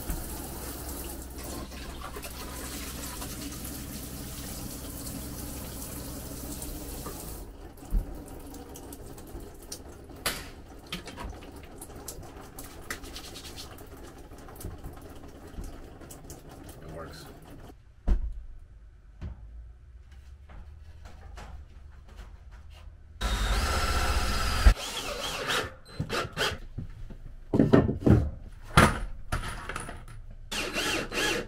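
A rainfall shower head running, its water spraying steadily for the first several seconds, then stopping. About 23 seconds in, a cordless drill runs briefly, driving a screw into a wooden trim board, followed by a series of sharp knocks.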